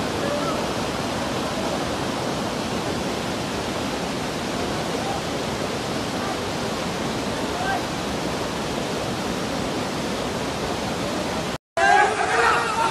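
Floodwater rushing in a fast, churning torrent: a steady, dense rushing noise. It cuts out abruptly near the end.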